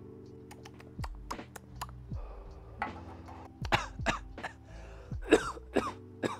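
A lighter clicked over and over to light a joint, a string of sharp clicks, with breathy puffs as the smoke is drawn and let out and a throat clearing in the second half.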